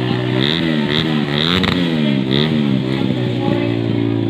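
TVS Apache stunt motorcycle engine revved in several quick blips, its pitch rising and falling repeatedly for about two and a half seconds, then dropping back to a steady idle.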